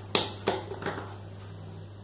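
Two sharp clicks about a third of a second apart, then a few fainter ticks, over a steady low hum.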